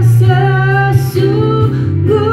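A woman singing into a handheld microphone over backing music, holding long notes with a brief break about a second in.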